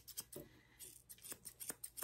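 Ashley Craig Art Deco thinning scissors snipping through a springer spaniel's neck hair: a run of faint, crisp snips, a few a second at an uneven pace, with a short pause about half a second in.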